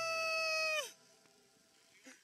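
Background music: one held pitched note slides down in pitch and stops just under a second in. A quiet stretch follows.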